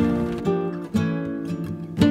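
Flamenco-style Spanish acoustic guitar music: a chord at the start, then single plucked notes ringing and fading.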